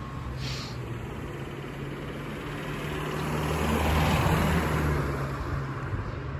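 A car driving past on a street, engine hum and tyre noise growing louder to a peak about four seconds in, then fading as it moves away.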